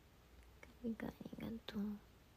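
A young woman's short laugh: a quick run of voiced pulses lasting about a second, starting a little after half a second in.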